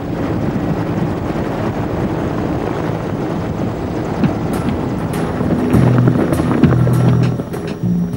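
Mi-24 Hind helicopter in flight: steady rotor and turbine noise. It is mixed with orchestral-style music whose sustained low chords swell in the second half.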